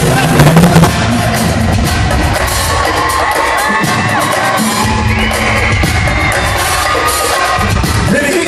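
Live pop concert music played loud over an arena sound system, with the crowd cheering and whooping over it. There are heavy drum hits in the first second, and the bass drops out briefly around the middle.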